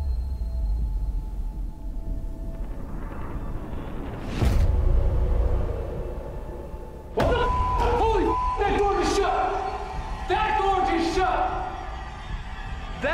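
A door at the far end of a long hallway slamming shut once, about four and a half seconds in.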